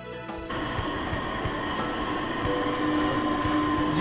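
Background music cuts off about half a second in, giving way to a steady machine hum with hiss: the room tone of a small restaurant, with its fans or cooling equipment running.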